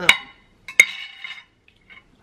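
A metal knife clinks twice against a serving platter, about a second apart, each clink ringing briefly. Faint handling sounds follow near the end.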